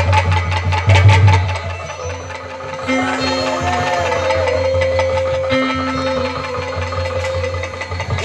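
Live accompaniment music: rapid drum strokes for about the first two seconds, then slow, held melodic notes on a keyboard instrument over a softer low beat.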